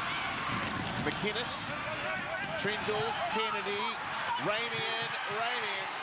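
Rugby league TV broadcast playing at a lower volume: a commentator talking over steady crowd noise from the stadium.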